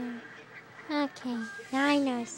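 A person's voice making a few short, pitched, wordless vocal sounds in quick succession, the last one the loudest.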